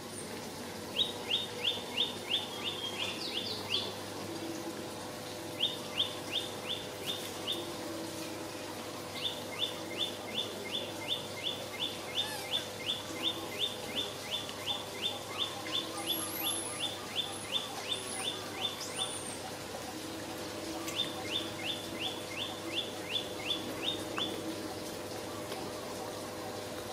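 A bird calling in four runs of short descending notes, about three a second, with pauses between the runs. A few higher, thin whistled notes sound about two-thirds of the way through.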